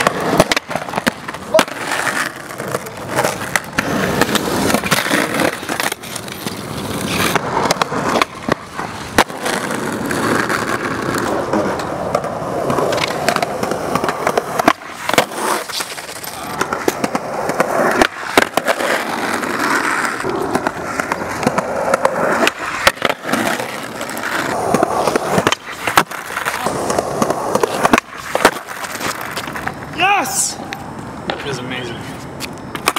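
Skateboard wheels rolling on asphalt and concrete, with repeated sharp clacks of the board popping, landing and slapping the pavement during kickflip attempts over a small gap, some of which end in falls.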